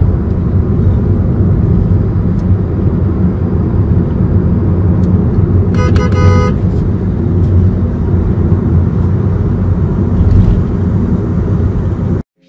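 Steady, loud engine and road noise of a vehicle driving on a highway behind a cement tanker truck. About six seconds in, a vehicle horn sounds in a quick burst of a few short toots.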